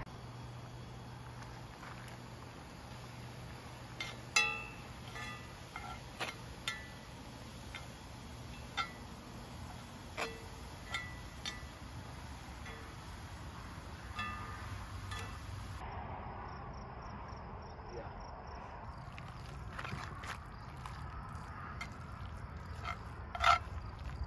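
A utensil clinking and scraping against a cast-iron skillet while food is stirred, in about a dozen short ringing taps at uneven intervals over a steady low hum.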